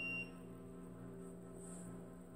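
Faint, soft ambient background music: a sustained low drone of held tones, with a thin high pure tone that stops about a quarter second in.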